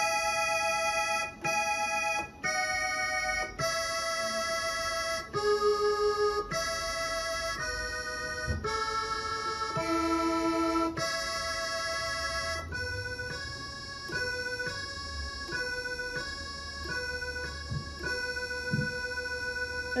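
Yamaha PSR-S670 arranger keyboard playing a single-line melody with a blended accordion-and-organ voice. The sustained notes change about once a second, then move in shorter steps in the second half.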